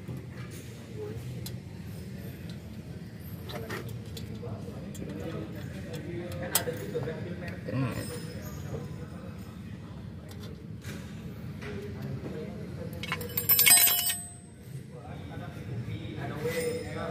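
Metal clicks and clinks from a drum brake's shoe hold-down springs and pins being fitted to the backing plate, with a louder cluster of metallic clinking and a brief ring near the end, over a steady low hum.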